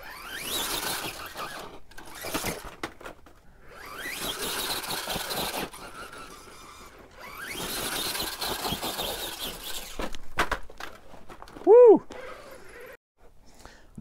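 Axial Capra RC rock crawler's Spektrum 2100kV sensored brushless motor whining in several full-throttle bursts, its tires spinning on sandstone as it is shot up a steep rock slope. Near the end come a few sharp knocks, then one short, loud cry that rises and falls in pitch.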